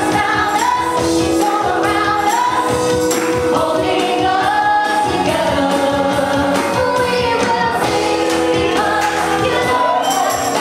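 A small group of women singing a gospel worship song together into microphones, several voices in harmony, with a tambourine keeping a steady beat.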